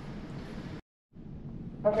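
Steady low room noise in a kitchen, cut off completely for a moment about a second in by an edit, then resuming. A voice says "Okay" at the very end.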